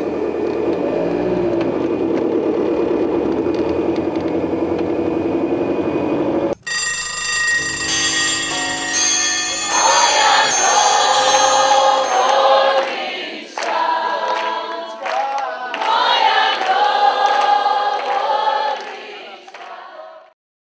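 For about six seconds a steady drone with a wavering tone. Then, after a sudden break, music with a group of voices singing in chorus, which fades just before the end.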